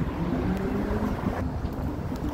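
Street traffic: cars driving past on a busy multi-lane road, a steady low rumble with an engine hum.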